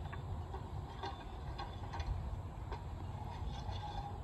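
A few faint clicks and scrapes as an iron searcher on a long staff is worked inside the bore of a 4-pounder field gun, checking it after firing, over a low steady rumble.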